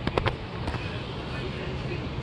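A few sharp clicks in the first second, over a steady background hum.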